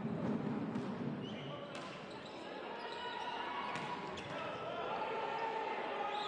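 A volleyball bouncing a few times on the court floor as a few sharp knocks, heard over the murmur and voices of spectators in a large sports hall.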